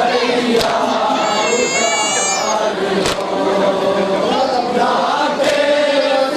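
A group of men chanting a nauha, the Shia lament, together into a microphone, with a high wavering note about a second in. A few sharp knocks cut through the chanting.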